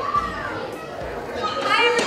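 Indistinct chatter of children's voices, growing louder near the end.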